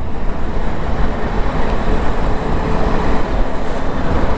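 Steady wind and road rush on a moving motorcycle rider's microphone in the rain, with a low rumble underneath and no distinct engine note.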